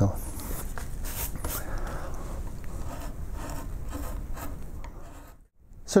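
Skew chisel cutting into wood by hand, a series of short scraping and rubbing strokes of steel on wood that fade out about five seconds in.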